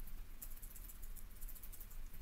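Faint steady low hum and hiss of the line on a web-conference call, with no distinct sound event.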